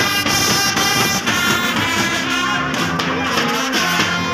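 Band music playing steadily, with guitar, drums and horns.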